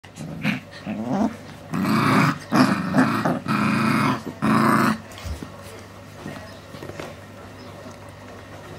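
Four-week-old Alaskan Malamute puppies play-fighting, growling and snarling at each other in a string of loud bursts. The growls stop about five seconds in, leaving only quiet scuffling.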